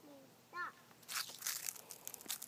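Dry fallen leaves crunching and crackling in a quick, dense run that starts about a second in.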